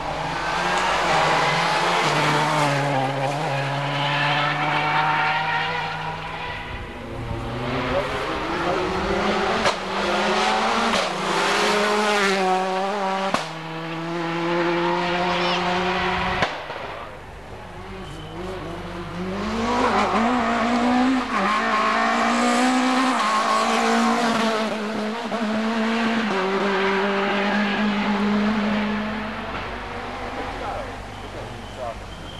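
Rally cars passing at full throttle on a tarmac special stage, engine pitch climbing and dropping as they change gear; one car fills about the first half, a quieter dip follows, then another car passes through the second half.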